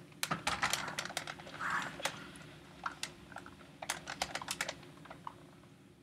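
Irregular light clicks and knocks, several a second, as a NAO humanoid robot's plastic body is handled and set back upright. The clicks thin out after about five seconds.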